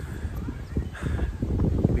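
Wind buffeting the phone's microphone: an uneven low rumble that comes in gusts and grows stronger near the end.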